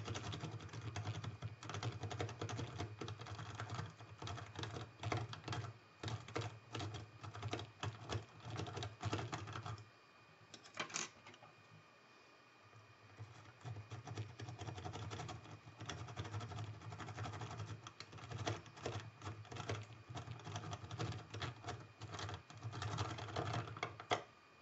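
Rapid, irregular clicking and scraping of a rake pick worked in and out of a six-pin Mila euro cylinder lock, raking the pins along the bottom of the keyway, with a quieter pause of a few seconds about ten seconds in. One pin sticks at the bottom, so the rake has to be worked past it.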